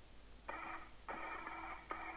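Spacewalk radio loop keyed open three times without speech: three short bursts of static with a low steady hum in each, each starting and stopping abruptly.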